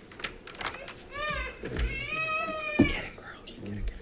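A young child's high voice: a short wavering sound about a second in, then a held high note lasting about a second. Faint clicks of papers being handled sound around it.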